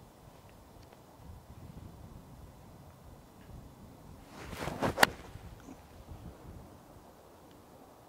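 A golf iron swung at the ball: a brief swish through the grass ending in one sharp click as the clubface strikes the ball, about five seconds in. Steady wind noise on the microphone underneath.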